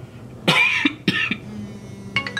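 A man coughing twice, loudly: a longer harsh cough about half a second in and a shorter one about a second in.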